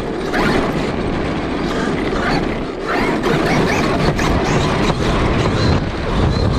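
Electric drivetrain of a Traxxas E-Revo 2 RC monster truck, heard from a camera mounted on it: the motor and gears whine, rising in pitch with each burst of throttle as it speeds up, over a dense rattle of the chassis and tyres running on cobblestones.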